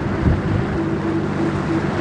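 Wind buffeting the microphone in uneven gusts, over a steady low hum.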